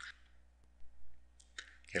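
A few faint computer mouse clicks, heard over a steady low hum from the recording.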